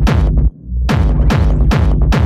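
Hard techno from a DJ mix: a fast, driving kick-drum beat with heavy bass. About half a second in, the beat cuts out for a moment, then comes back in with a low swell.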